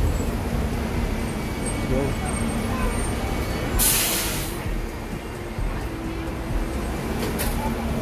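City street traffic: a steady low rumble of vehicles, including buses, with a short loud hiss about four seconds in and a briefer one near the end, and voices of passers-by.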